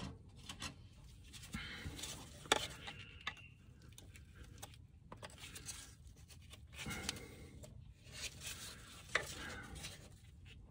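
Faint handling noises as gloved hands work a plastic electrical plug off the alarm siren's wiring: rubbing and fumbling with a few sharp plastic clicks. The loudest click comes about two and a half seconds in, and another comes near the end.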